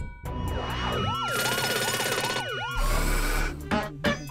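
Cartoon sound effect of a siren wailing quickly up and down, over a held rising tone and music, with a brief low rumble about three seconds in.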